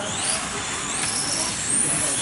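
Radio-controlled model racing car running on the track, its high-pitched whine rising and falling in pitch as it speeds up and slows.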